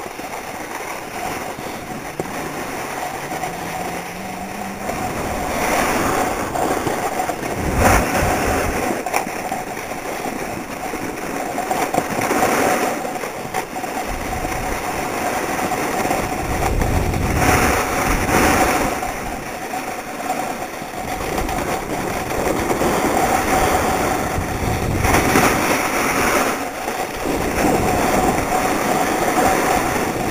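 Riding down a groomed snow run: edges scraping and sliding on packed snow, with wind rushing over the microphone, the noise swelling in surges every few seconds as the turns and speed change.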